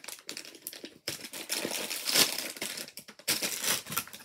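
Plastic mini-figure blind-bag packet crinkling and tearing as it is ripped open by hand, a run of rustles with short pauses that is loudest about halfway through.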